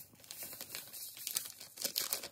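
A foil-lined sachet of keşkül pudding powder crinkling in the hand as the powder is poured out of it into a stainless steel pot. The crackling is dense and irregular and grows louder in the second half.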